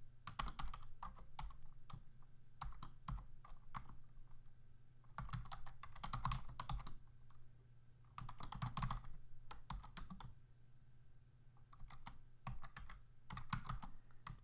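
Typing on a computer keyboard: irregular bursts of keystrokes with short pauses between them, over a low steady hum.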